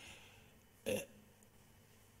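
A man's single short hesitation sound, "uh", about a second in, heard through a lectern microphone over the quiet room tone of a hall.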